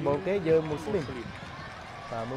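A man's voice speaking for about the first second, then only a steady background noise.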